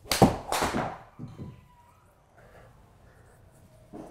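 A forged 8 iron striking a golf ball with a sharp crack, followed about a third of a second later by the ball hitting the simulator's impact screen. A few softer knocks follow about a second later.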